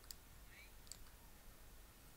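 Near silence with a few faint clicks in the first second.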